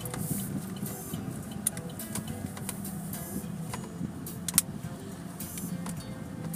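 Steady low hum of a car cabin on the move, with scattered sharp clicks and rattles.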